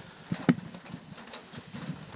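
A pause between sentences with one sharp click about halfway through and a few fainter ticks over low background noise.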